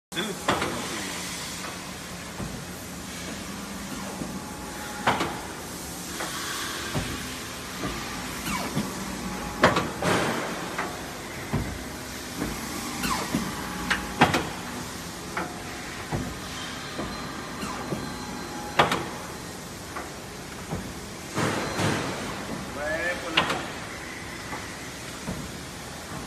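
Industrial paper guillotine cutter running: a steady motor hum with sharp knocks a few seconds apart as the clamp and blade come down through paper.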